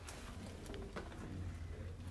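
A bird calling faintly with short low notes, over a low steady rumble.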